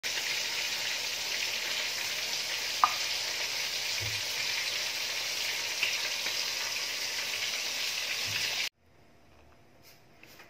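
Steady sizzling of food frying in hot oil, with a light clink about three seconds in. It cuts off abruptly near the end.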